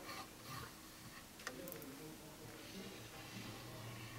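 Faint handling sounds of a squeeze bottle of liquid glue being drawn along the edge of a cover board, with one sharp click about a second and a half in. A low steady hum lies underneath.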